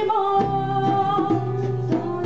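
Live Cuban song: a woman singing a long held note over guitar accompaniment.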